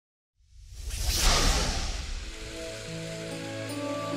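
A hissing whoosh rises out of silence and fades, then soft background music of long held notes comes in over a faint steady hiss.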